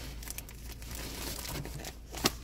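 Clear plastic bags crinkling as bagged magazines are handled and shuffled, a fairly quiet run of many small crackles.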